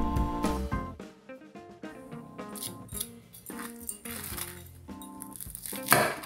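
Soft background music of plucked notes, with several faint crunches of a knife cutting through the crisp panko crust of an air-fried chicken tender; the loudest crunch comes near the end.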